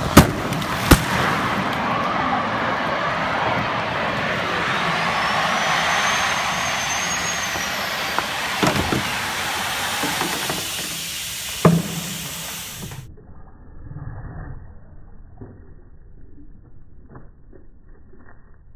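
Six-person liferaft inflating: a loud rush of gas hissing into the raft for about thirteen seconds, opening with a few sharp cracks as the canister bursts apart, with two more knocks later on. Then it drops to a quieter, muffled rumble with faint knocks.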